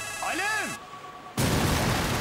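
A mobile phone wired as a bomb's trigger rings with a short electronic tone that rises and falls in pitch, the call that sets the bomb off. About a second and a half in, a loud explosion breaks in and goes on.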